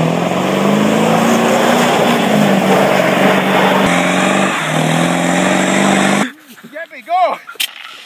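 Ford Powerstroke V8 turbo-diesel pickups held at high revs during burnouts, the rear tyres spinning. The engine note wavers up and down, with a cut to a second truck about four seconds in. About six seconds in, the engine sound stops abruptly.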